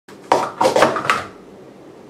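Plastic sport-stacking cups clacking together as 3-3-3 pyramids are downstacked at speed: a quick run of four or five sharp clacks in the first second or so, then stopping.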